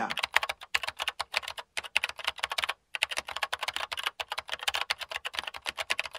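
Fast, continuous clicking, many sharp clicks a second, with a couple of brief breaks in the first half.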